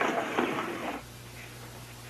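A man's voice finishing a sentence in the first second, then a quiet pause with only a low steady hum.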